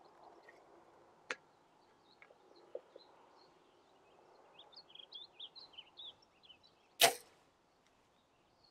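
Compound bow shot: a single sharp crack of the string and limbs on release, near the end, after a few seconds of quiet with birds chirping.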